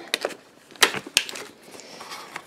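Groceries being handled inside an insulated cooler bag: a cardboard food box and plastic tubs knocking and rustling against each other, with a few sharp clicks.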